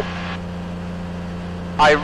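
Rotax 582 two-stroke engine and propeller of a Kitfox light aircraft droning steadily in flight, heard through the pilot's headset microphone as a low, even hum.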